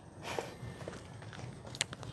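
Faint rustling with a few light clicks, the sharpest near the end, from hands handling a potted tree trunk.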